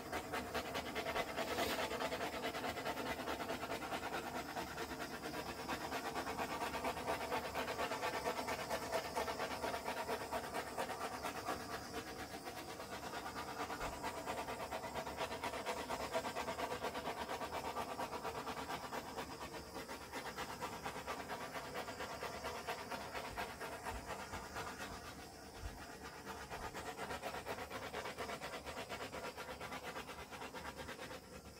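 Handheld butane torch burning steadily as it is passed over wet epoxy resin, popping surface bubbles and warming the resin so it self-levels.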